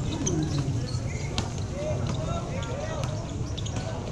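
Crowd of basketball spectators talking and shouting over one another, with a few sharp knocks of the ball bouncing on the concrete court, the loudest about one and a half seconds in.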